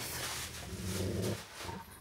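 An American bulldog vocalising softly and low, after a brief rustle at the start.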